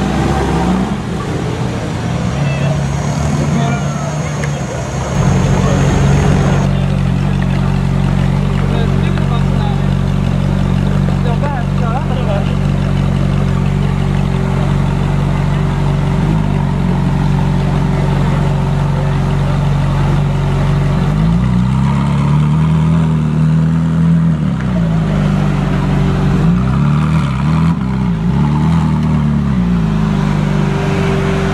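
Lamborghini Gallardo V10 idling, then, about five seconds in, a Ferrari 458 Italia's V8 idling steadily. In the second half the Ferrari's throttle is blipped, several short revs rising and falling back to idle.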